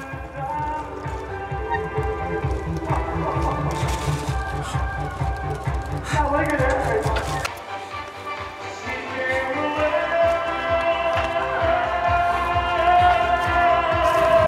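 Music with a steady pulsing bass beat and sustained melody notes; the beat drops out briefly about halfway through, then comes back.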